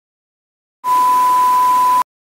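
An edited-in bleep sound effect: a steady high-pitched beep over a loud hiss of noise, starting just under a second in and cutting off abruptly after about a second.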